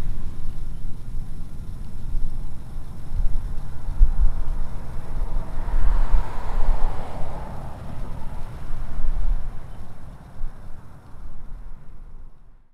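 Outdoor ambience: a loud, uneven low rumble with a brief swell about halfway through, growing quieter near the end.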